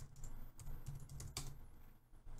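Typing on a computer keyboard: a quick run of irregularly spaced keystrokes.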